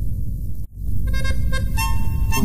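Chamamé ensemble of accordion, bandoneón and guitars: a held final chord breaks off with a brief gap about two-thirds of a second in, and the next chamamé begins with free-reed instruments playing a new melody.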